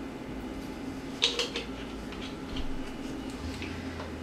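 Quiet kitchen room hum with a short clatter of kitchen utensils and containers at a mixing bowl about a second in, followed by a few faint taps.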